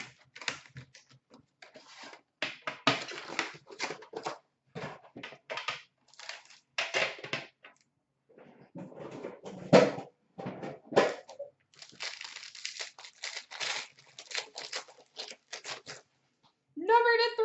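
An Upper Deck Premier hockey card box and pack being torn open by hand, with cardboard and wrapper tearing and crinkling in irregular, uneven rips and the cards handled between them. The loudest rip comes just before ten seconds in.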